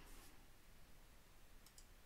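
Near silence: faint room hiss, with a couple of faint short clicks, one just after the start and one near the end.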